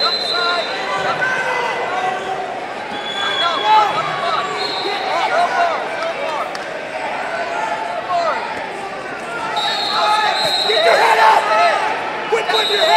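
Many overlapping voices of coaches and spectators talking and shouting in a large arena hall, louder near the end, with a high steady tone sounding briefly several times.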